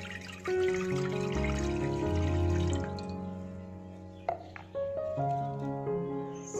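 Background music with steady instrumental notes, and under it water poured from a plastic jug into a non-stick cooking pot, splashing from about half a second in until about three seconds in.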